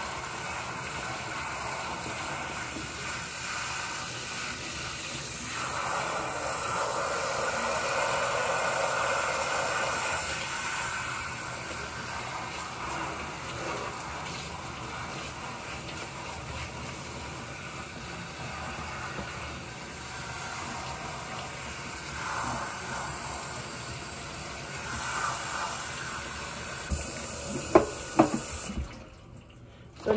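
Water from a kitchen faucet's pull-down sprayer running steadily over a person's hair and into a stainless-steel sink as the hair is rinsed. A few sharp knocks come near the end, then the water shuts off abruptly.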